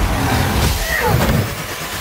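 Cars in a movie chase scene: engines and tyre noise in a dense film sound mix, with a short pitched sweep about a second in.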